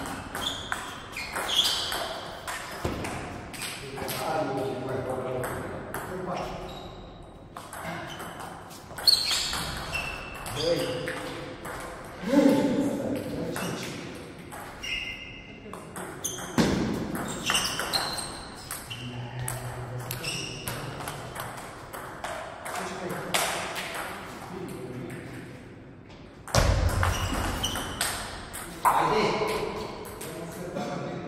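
Table tennis rallies: a celluloid-type ball clicking back and forth off rubber paddles and the table top in quick, irregular runs of sharp taps. Men's voices are heard between points.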